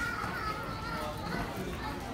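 A person laughing and talking in a high-pitched voice, the laugh drawn out in roughly the first second.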